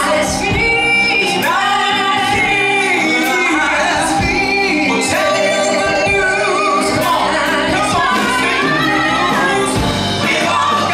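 Live funk song: a male lead vocalist and a group of backing singers singing together over piano, bass guitar and drums, with regular drum and cymbal strokes.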